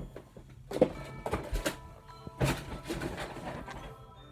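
A plastic zip on a pencil case being pulled open in a few short strokes, with handling noise from the case, over quiet background music.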